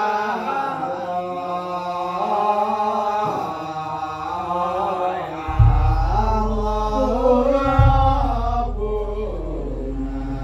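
Melodic chanting voice in long, held phrases; about five and a half seconds in, a large jedor drum is struck with a deep boom that rings on, and is struck again a couple of seconds later.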